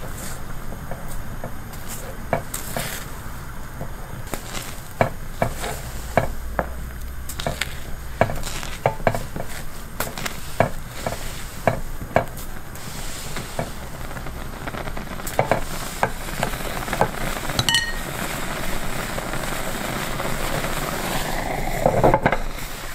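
A spoon knocking irregularly against a cooking pot as steamed egg is stirred, over a steady sizzle that grows louder in the last few seconds. There is one brief ringing clink about three-quarters of the way through.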